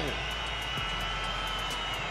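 Steady stadium crowd din at a speedway meeting, an even wash of noise with a thin high whine running through it.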